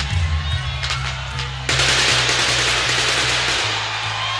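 Live heavy metal band playing, with a sudden loud crackling hiss from stage pyrotechnic spark fountains about halfway through that lasts about two seconds over the bass notes.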